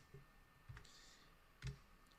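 Near silence with a couple of faint clicks, the louder one near the end: a computer mouse clicking to advance the presentation slide.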